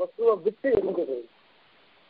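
A man's voice speaking a few syllables, stopping a little past halfway through, followed by a silent gap.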